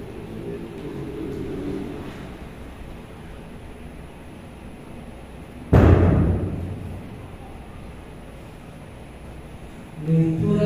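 A single sudden loud thump on the lectern microphone, carried over the church sound system and dying away over about a second, as the microphone is handled or knocked.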